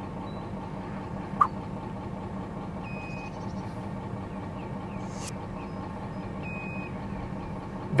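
Electric lift motor of a Saris Door County motorized hitch bike rack humming steadily as it slowly raises about 120 pounds (a loaded e-bike plus a child), near its rated capacity. A short chirp about one and a half seconds in.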